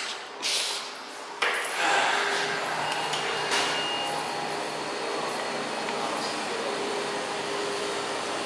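A short laugh, then about a second and a half in a steady rushing hum of air-handling equipment comes up suddenly and runs on, with a brief high beep around the middle.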